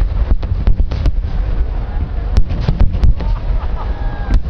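Starmine fireworks barrage: many aerial shells bursting in quick succession, sharp cracking reports several times a second over a continuous deep booming rumble.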